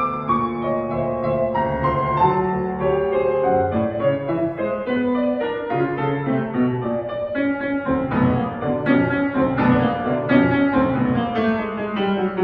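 Solo concert grand piano played in a classical style, the notes coming quicker and denser from about eight seconds in.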